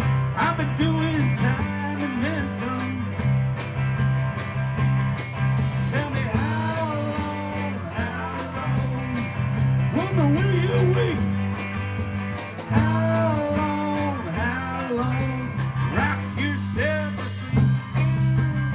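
Small rock band playing live: electric guitars through amplifiers, bass and drum kit, with a lead line of bending, gliding notes over steady low bass notes.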